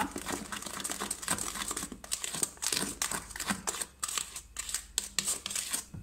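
Silicone spatula stirring and scraping runny cake batter around a stainless steel bowl, in quick, irregular scraping strokes.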